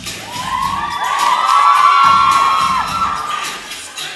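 A school audience of children screaming and cheering, many high voices at once, swelling to a peak about halfway through and then dying away.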